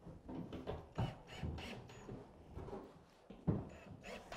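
Hands handling small metal cam-lock pins and a cordless drill on a melamine chipboard panel: light knocks and rustling, with a sharper knock about a second in and another near the end.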